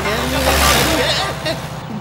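Pickup truck driving fast on a dirt track: a rushing noise swells about half a second in and fades after a second and a half, over a steady low drone.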